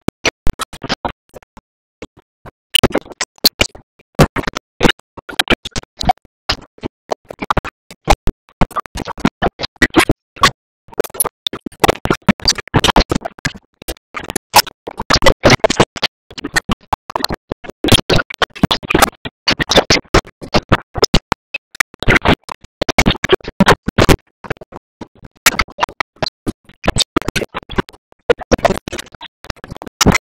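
Dense, irregular crackling and clicking broken by short silent gaps, like a garbled, stuttering music track with a scratch-like, choppy sound.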